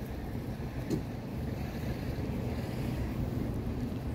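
Wind buffeting a phone's microphone: a steady low rumble.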